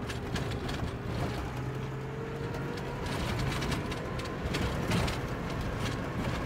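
A vehicle driving on a rough dirt road, heard from inside the cabin: a steady low engine and road rumble with a faint engine whine that rises slowly, and scattered rattles and knocks.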